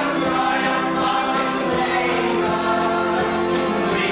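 A church choir of men and women singing a hymn together.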